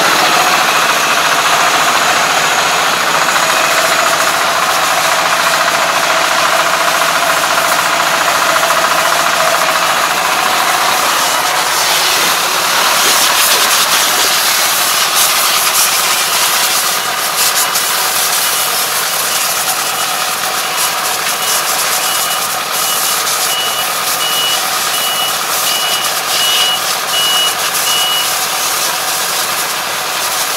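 Kubota ARN460 crawler combine harvester's diesel engine running steadily with its machinery and tracks. From a little past the middle until near the end, a high-pitched beep repeats evenly over the engine noise.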